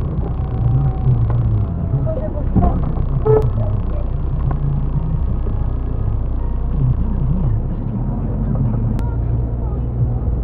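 A car's engine and road noise rumble steadily inside the cabin, picked up by a dashcam's microphone while driving. Low, muffled voices come and go over the rumble. The rumble changes suddenly near the end.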